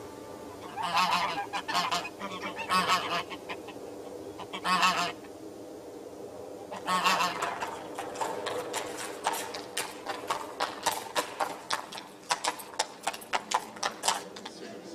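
Birds calling: a few long, wavering calls in small groups, then a quick run of short calls from about eight seconds in.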